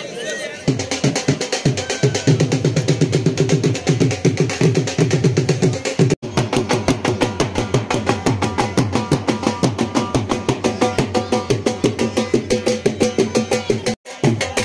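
Dhol drums beaten in a fast, steady rhythm that starts just under a second in, breaking off for an instant about halfway through.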